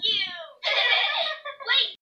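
High-pitched cartoon voices making sounds without words, played from a TV: a falling cry, then a breathy stretch, then a short rising call near the end.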